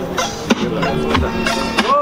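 A hip-hop instrumental beat playing from a JBL portable Bluetooth speaker, with sharp drum hits roughly every half second over a sustained bass line: the beat for the next round starting.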